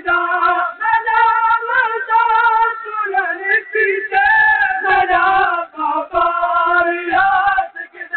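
Noha reciters singing a Shia mourning lament unaccompanied, in long held phrases with a wavering pitch and brief breaks for breath.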